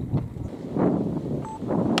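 Wind gusting over the microphone in two swells, with a sharp click near the end.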